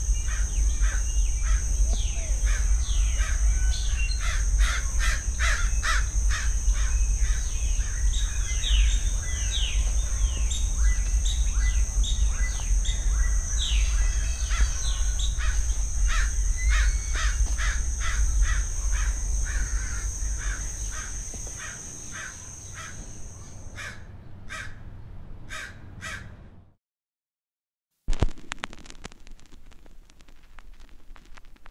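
Crows cawing again and again over a steady high-pitched drone and a low rumble, a rural ambience that fades away about two-thirds through. It cuts to silence for about a second, then a sudden sound comes in near the end.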